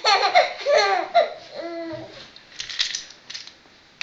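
Baby laughing in a run of quick, high-pitched bursts, then a longer held note, followed by a few short clicks as the laughter dies down near the end.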